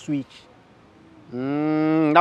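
After a short pause, a man's long, level hum of hesitation, a held "mmm", starts a little past halfway and runs straight into his next words.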